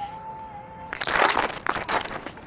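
Insulated delivery box on an electric scooter being closed over a packed food order: about a second of loud rasping, crinkling noise in the second half. Before it comes a faint steady tone.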